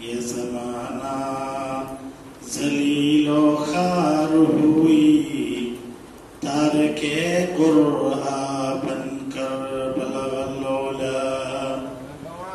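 A man chanting devotional verse unaccompanied through a microphone, in long held notes with melodic turns, sung in three phrases with short breaks for breath about two and six seconds in.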